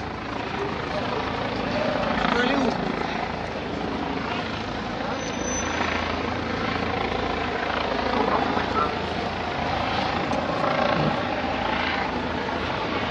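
A steady low rumble of outdoor noise with faint distant voices, without any single loud event.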